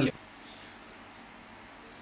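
An insect's high, thin trill, coming in stretches with short breaks, over low room hiss.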